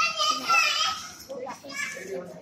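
A child's high-pitched voice talking and calling out, in two bursts, with other children's voices around it.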